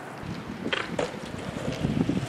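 Wind buffeting an outdoor camera microphone, with two faint clicks about a second in and a low rumble building toward the end.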